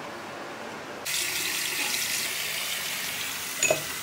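Bathroom sink faucet running water into the basin, a steady hiss that gets louder and brighter about a second in. A short knock comes near the end.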